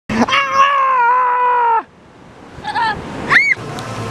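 A high-pitched voice holding one long squeal for almost two seconds, then, after a short pause, two brief yelps, the second rising and falling sharply.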